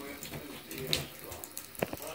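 Water trickling and splashing in a bathtub as wet ferrets move about on a bath mat, with scattered small clicks and two sharp clicks close together near the end.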